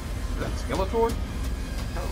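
Fantasy film trailer soundtrack with a deep, steady low rumble, and a man's short exclamation about a second in.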